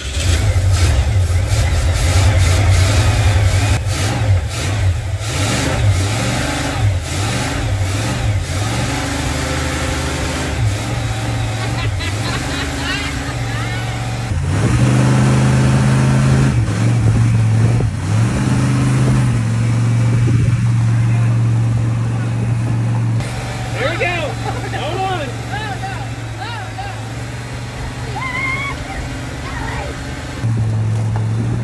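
Ford 460 big-block V8 in an Econoline van running and revving under load as the van tries to pull in gear through its C6 automatic transmission, whose internal clutches are suspected to be slipping. The engine note rises and falls, with sudden shifts in the sound about halfway through and again about two-thirds through.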